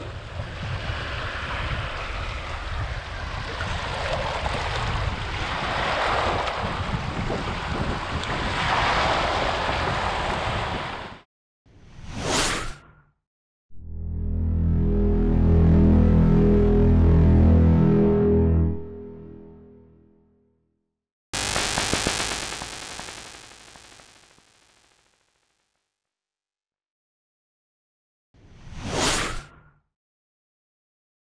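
Small waves washing in over a stony shoreline, a steady surf wash that cuts off suddenly about eleven seconds in. It is followed by electronic whoosh effects and a low synth tone lasting about six seconds.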